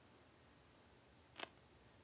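Near silence: room tone, broken by one brief faint click about one and a half seconds in.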